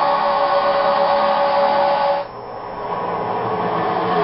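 NASCAR stock-car V8 engines at full throttle in a tight drafting pack. For about two seconds they are heard as a steady, high drone of several held tones from an onboard camera; then the sound cuts to a softer, rougher roar of the pack. All of it is heard through a television's sound.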